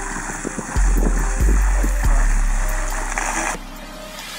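Water spraying from a hose into a sandy planting hole: a steady hiss, under a heavy low rumble of wind on the microphone that swells in sudden gusts. The hiss cuts off suddenly about three and a half seconds in.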